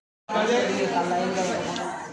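Several people talking at once, their voices overlapping, beginning after a split second of dead silence at the start.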